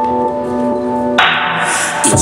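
Live electronic keyboard holding sustained chords. About a second in, the chord changes to a brighter, fuller sound.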